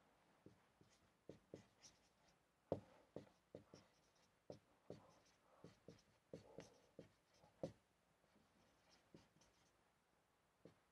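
Marker pen writing on a whiteboard: faint, irregular taps and short squeaky strokes as letters are written.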